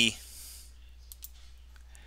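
Two quick, faint computer mouse clicks about a second in, opening a dropdown menu.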